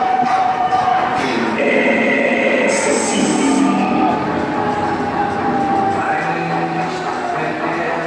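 Loud funfair ride soundscape: music from the ride's sound system mixed with voices, under a long steady tone that slowly drops in pitch.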